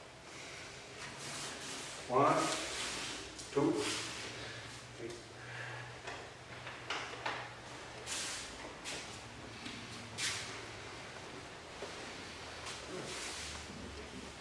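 A man's voice twice, briefly, about two and three and a half seconds in, then soft swishes and rustles of cloth and a katana as the blade is returned to its scabbard during an iaido kata.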